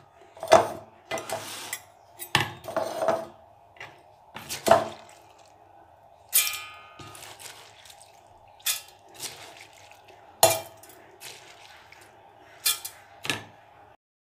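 Steel spoon clinking and scraping as soaked rice and dal are spooned into a steel mixer-grinder jar: a dozen or so separate taps and knocks, one ringing briefly about six seconds in.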